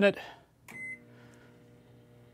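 A microwave oven's keypad beeps once, and the oven starts running with a faint, steady hum.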